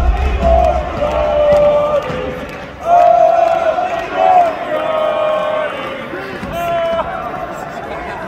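Arena wrestling crowd, with loud drawn-out yells and shouts from spectators close by, a series of held cries over the general crowd noise.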